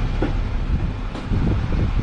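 Low, uneven rumble with wind buffeting the microphone.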